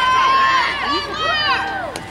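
Spectators at a youth baseball game shouting and cheering during a pitch, several high-pitched voices overlapping, one of them holding a long call.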